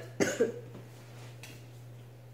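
A boy coughing twice in quick succession just after the start, the tail of a short coughing fit, followed by a low steady hum.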